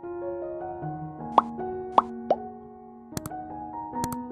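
Soft background piano music, with three quick rising pop sound effects about a second and a half in, then two sharp clicks near the end: the sounds of an on-screen like-and-subscribe button animation.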